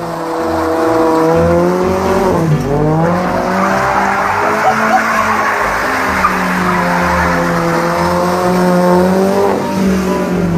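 A car engine held at high revs while its tyres squeal and skid. The engine pitch dips and climbs again a couple of seconds in, and falls away near the end.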